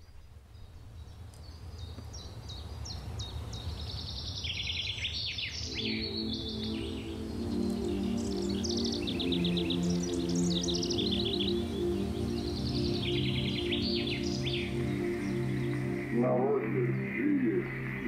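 Birdsong with many quick chirps over a low rumble that fades in, joined about six seconds in by sustained music chords and later by a deeper held note. Near the end an old recording of Stefan Żeromski's voice begins to speak.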